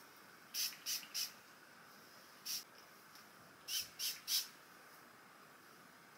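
A hand-held spray bottle of hair product spritzed onto damp hair roots in short, quick sprays: three in quick succession, one on its own, then three more.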